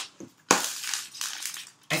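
Tarot cards being riffle-shuffled by hand: a quick rattling flutter of cards about half a second in that tails off over a second. It ends with a few light clicks as the halves are pushed together.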